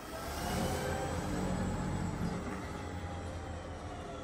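Electric school bus pulling away, a faint motor whine of several tones drifting slowly in pitch over low tyre and road noise.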